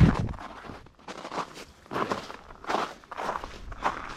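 Footsteps crunching on a packed-snow trail, a step about every half second. A low thump at the very start is the loudest sound.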